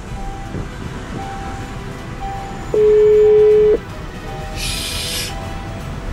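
Telephone ringback tone through a phone's speaker: one steady one-second ring about three seconds in, the Brazilian ringing cadence, while the call to the lost phone goes unanswered. A short hiss comes near the end, over low car-cabin rumble.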